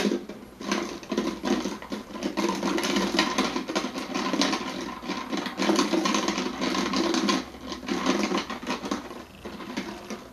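A plastic water bottle crinkling and clicking as it is handled close to the microphone: a sharp click at the start, then a dense, steady crackle that lasts about nine seconds.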